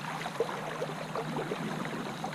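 Creek water gurgling and plinking close to the microphone: many small, irregular drop-and-bubble sounds as the water is disturbed around the camera.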